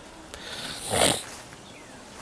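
A single short nasal breath close to the microphone, about a second in.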